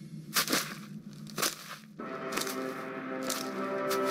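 A soundtrack cue: four sharp cracks in the first two seconds, then a held music chord that comes in about halfway and swells.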